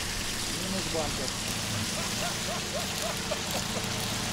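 Steady hiss of rain and running water around a flooded ford, with a low vehicle engine idling underneath for the first half. Through the middle comes a run of short rising-and-falling tones, about four a second.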